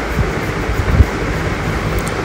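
Nitrogen hissing out through an AC manifold gauge set as its low-side valve is opened, releasing the leak-test charge from the refrigerant lines after it held its full 200 with no leak. A steady hiss with a low rumble and a single click about a second in.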